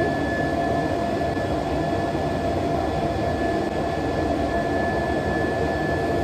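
Steady rushing fan or ventilation noise with a thin, constant high whine running under it.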